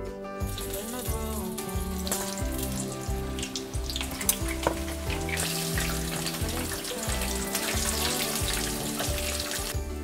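Corn fritters frying in hot oil in a wok, sizzling under background music; the sizzle grows much louder about halfway through.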